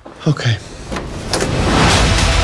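Film-trailer sound mix: a short falling vocal sound, a few sharp hits, then a rising swell that builds into the trailer's music.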